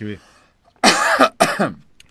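A person coughing twice in quick succession, two short harsh bursts about half a second apart.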